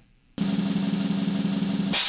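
Snare drum roll sound effect, starting about a third of a second in and running steadily until just before the end, where a brighter wash takes over and fades.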